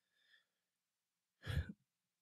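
Near silence, then a man's single short breath about one and a half seconds in.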